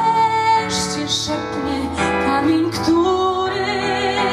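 A woman singing live while accompanying herself on an electronic keyboard, with long held notes sung with vibrato.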